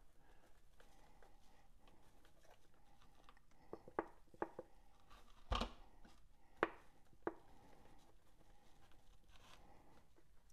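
Quiet kitchen handling noise as a plastic spice shaker is shaken over a peeled pineapple on a wooden cutting board: a few sharp clicks and taps, and one heavier thump about halfway through as the fruit is turned on the board.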